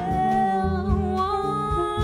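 Live bossa nova jazz band: a female voice singing long held notes over bass and light drums.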